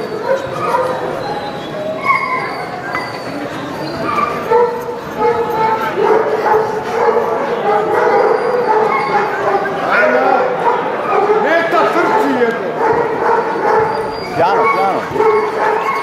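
Dogs barking repeatedly, with people talking in the background.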